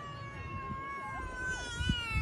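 A single long, high-pitched cry, held at a fairly steady pitch for about two seconds and sliding down at the end, over low outdoor background noise.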